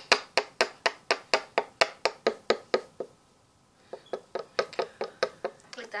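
A spoon tapping against a cinnamon container to shake cinnamon out, in quick even taps of about four a second; the tapping stops for about a second past the middle, then starts again.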